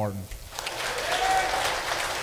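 Congregation applauding, the clapping starting about half a second in and carrying on steadily.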